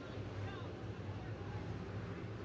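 Faint, steady low rumble of dirt late-model race cars running slowly around the track under caution, engines at low revs, with faint voices in the background.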